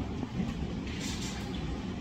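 Steady low background rumble of room noise, with no speech; a brief faint hiss about a second in.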